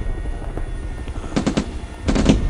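Sound-effect battle ambience: a steady low rumble, with a short burst of rapid gunfire about one and a half seconds in.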